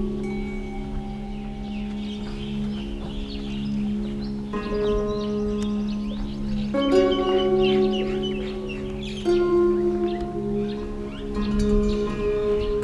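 Background music of sustained, bell-like chords over a steady low drone, the chord changing every two to three seconds.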